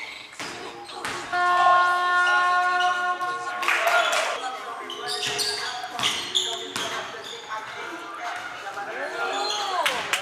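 A basketball bouncing on a hardwood gym floor during a game, its impacts echoing in a large hall. Players' voices, and a held tone from about one to three and a half seconds in.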